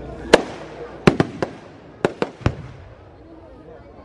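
Aerial fireworks going off: a quick series of about seven sharp bangs in the first two and a half seconds, the loudest near the start, then a lull.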